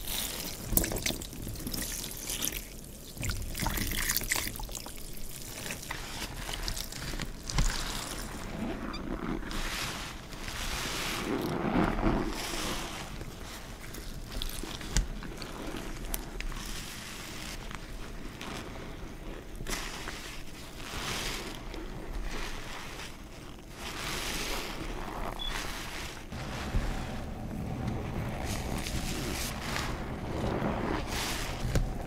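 Water poured and trickling onto kitchen sponges in a plastic tub. Partway through, soap-soaked sponges are squeezed by gloved hands, with foamy soapy water running out of them in repeated swells.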